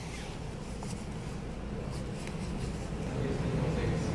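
Automatic upper-arm blood pressure monitor's pump inflating the cuff: a steady motor hum that grows gradually louder as the cuff pressure builds.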